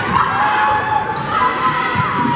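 Indoor volleyball rally in a gymnasium: the ball being struck, with players and spectators calling out over the hall's echo.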